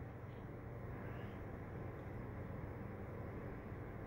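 Steady, faint background noise: room tone with a low hum and no distinct events.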